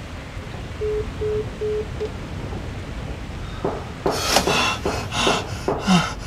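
Four short, even electronic beeps at one steady pitch. Then, from about four seconds in, a young man's loud, ragged panting and gasping breaths, the loudest sound here.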